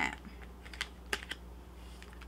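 A few light clicks of fingernails and card edges on laminated cards lying on a table as a card is picked up: three short taps close together about a second in, with a faint steady low hum underneath.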